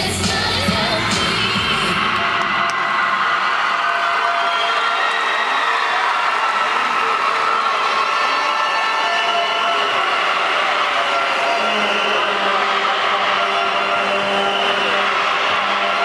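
Routine music that cuts off about two seconds in, followed by a crowd cheering and yelling steadily for the rest of the time.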